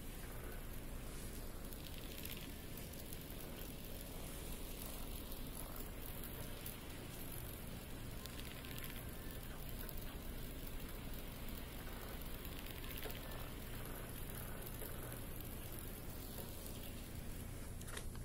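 Steady faint background hiss of room tone, with a few faint clicks.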